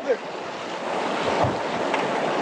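Steady rushing noise of wind on the microphone over running creek water, swelling slightly towards the middle, with a faint low thump about a second and a half in.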